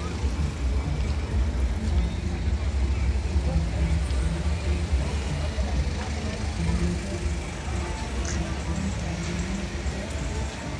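City street traffic on a wet road: cars driving past with a steady low rumble.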